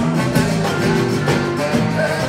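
Live zydeco band music: a tenor saxophone plays a melodic solo over the band's steady beat.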